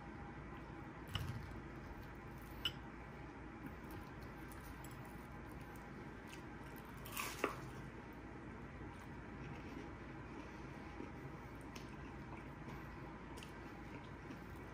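Faint close-up chewing of a hot Cheeto-crusted fried chicken strip, soft wet mouth sounds with a few small clicks, and one sharper crunchy bite about seven seconds in, the loudest moment.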